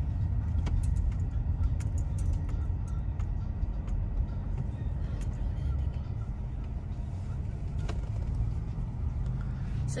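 Steady low rumble of a car rolling slowly, heard inside the cabin, with scattered light clicks and rattles.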